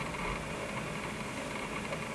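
Steady background room noise between sentences: an even hiss with a low hum, no distinct events.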